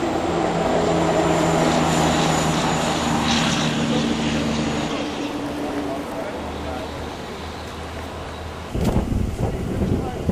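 A motor vehicle's engine running while it drives along a gravel road, a low hum with steady tones that fade after about five seconds. Near the end, wind buffets the microphone.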